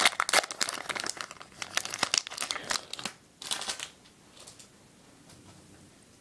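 Foil booster-pack wrapper crinkling and tearing as it is ripped open by hand: a dense crackle for about three seconds, one more short burst, then it dies away.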